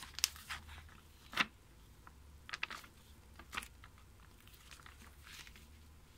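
Paper pages of a children's picture book rustling and crackling as they are handled and turned: a series of short crackles, the sharpest about a second and a half in.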